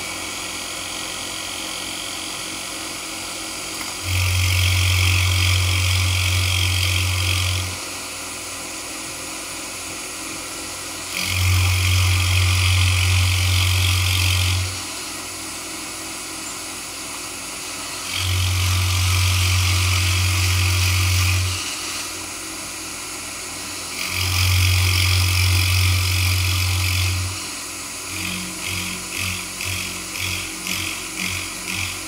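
A vertical milling machine's end mill taking four cutting passes across the end of a hardwood block. Each cut lasts about three and a half seconds, with the spindle running more quietly in between. A quick, even pulsing starts near the end.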